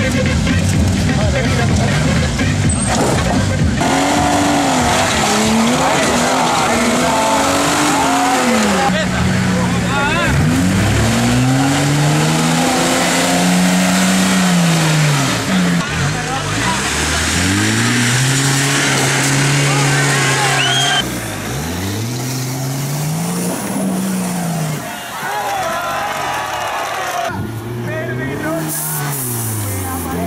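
Off-road 4x4 engines revving up and down again and again, working hard under load as they crawl through ruts and mud. The engine note changes abruptly twice as one vehicle gives way to another.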